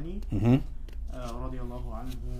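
A man's voice speaking in a small room, too indistinct for the recogniser, with a loud, short burst of voice about half a second in.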